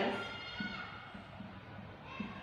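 The end of a woman's spoken word fading with room echo, then faint room noise with weak, brief far-off voices.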